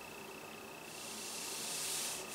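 Faint hiss that grows louder in the second half, with a steady high-pitched whine underneath.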